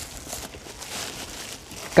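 Packaging rustling and crinkling as the contents of a welding machine's box are handled and lifted out, in uneven swells.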